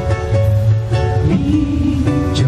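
Live band music: a ukulele played over electric bass and drums, a steady instrumental passage.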